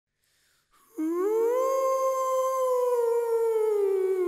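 A long canine howl, probably added as a sound effect, starting about a second in. It rises in pitch, holds steady, then slowly sinks near the end.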